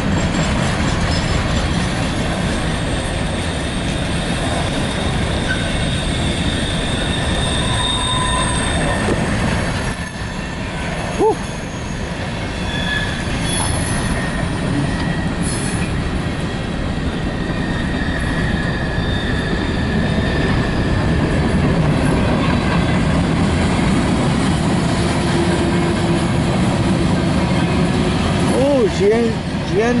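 Freight train cars rolling past at close range: a steady rumble of steel wheels on rail, with thin, high wheel squeals that come and go.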